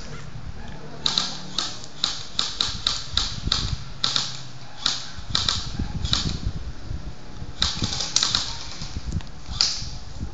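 A series of sharp, irregular clicks, about fifteen in all, coming in a run that pauses briefly about seven seconds in before a few more.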